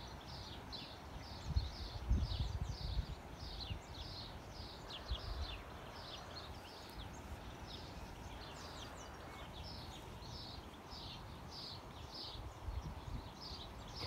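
A small bird calling over and over, a steady run of short high chirps at about two to three a second. Low gusts of wind rumble on the microphone, mostly in the first few seconds.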